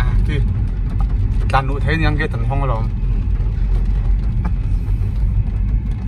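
Steady low rumble of a car's engine and tyres, heard from inside the cabin while driving, with a voice speaking briefly about a second and a half in.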